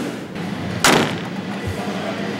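Pickup truck cab door slammed shut once, about a second in: a single sharp bang with a short ringing tail, over a low steady hall background.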